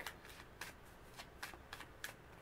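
Faint handling of a tarot deck: a few soft, separate flicks and slides of cards, spread irregularly over two seconds.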